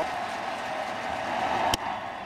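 Steady ballpark crowd noise, then one sharp pop near the end as a 99 mph four-seam fastball hits the catcher's mitt.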